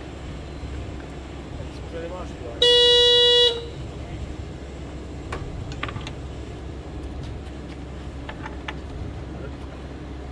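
A single loud horn-like toot at one steady pitch, just under a second long, about two and a half seconds in, over a steady low rumble and scattered light clicks.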